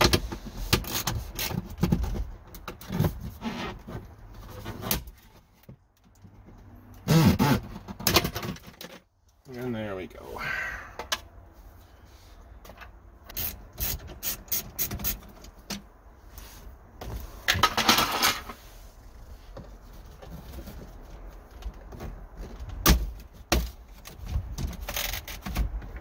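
Plastic centre dash trim and the screws behind it being worked loose by hand. Irregular clicks, knocks and rattles of trim and hand tools, with a few louder knocks scattered through.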